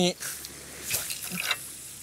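Sea water lapping and splashing against shore rocks, with a couple of soft splashes about a second in and again half a second later.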